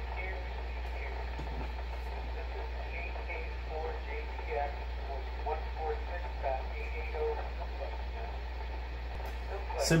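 Faint, narrow-band voices of other stations coming through an amateur radio transceiver's speaker, over a steady low hum.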